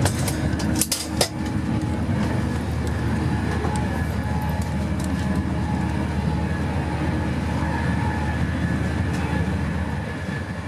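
Steady low rumble of a Class 390 Pendolino electric train running at speed, heard from inside the vestibule by the doors. A few sharp clicks come about a second in.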